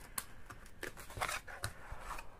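A small paperboard box being opened by hand, its card flaps rubbing and scraping in several brief, soft rustles as a plastic jar is slid out.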